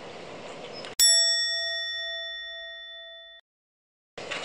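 Light outdoor background noise cuts off abruptly about a second in. A single bell-like 'ding' sound effect replaces it, ringing and fading for about two and a half seconds before it is cut off into silence. It is an edited comic punchline over a burnt hot sandwich.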